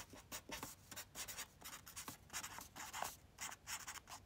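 Faint felt-tip marker (a My Name permanent marker) writing, a quick irregular run of short pen strokes.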